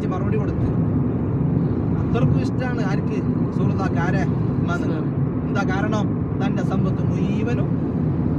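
Steady low rumble of road and engine noise inside a moving car's cabin, with voices talking over it at intervals.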